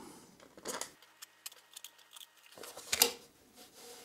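Small metal bolts being handled and pushed through the holes of a thin board: a few light clicks and taps, the sharpest about three seconds in.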